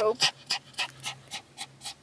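Small Pomeranian-type dog panting quickly, about four short breaths a second.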